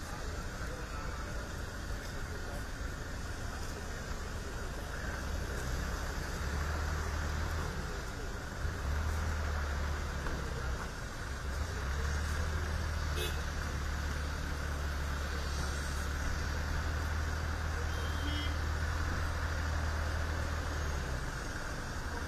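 Engines of a convoy of SUVs running as the cars move off, a steady low rumble.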